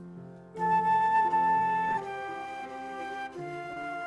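Flute playing a slow melody with lower held notes sounding beneath it; a loud high flute note comes in about half a second in and holds for over a second before the line moves on.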